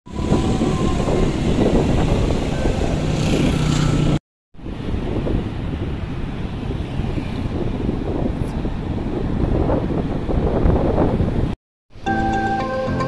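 Wind buffeting the microphone over the steady rush of breaking surf, cut off twice for a moment, about four seconds in and near the end.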